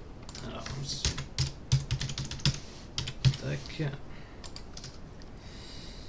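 Typing on a computer keyboard: a quick, irregular run of key clicks for about the first four seconds, then it stops.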